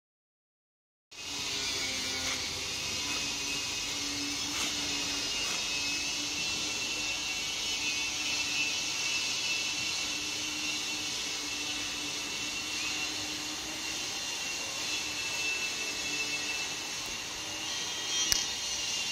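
After about a second of silence, a steady hissing background noise with a faint low hum.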